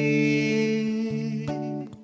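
Singer-songwriter ballad with acoustic guitar, in a gap between sung lines: sustained notes ring on, then die away briefly near the end before the next phrase.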